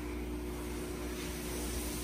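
Steady mechanical hum with a constant hiss from equipment running in the room, holding level throughout with no sudden sounds.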